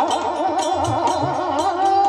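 Marathi devotional bhajan: a male lead voice sings a long wavering, ornamented note over a steady harmonium drone, while khanjari frame drums keep a beat of about four strokes a second.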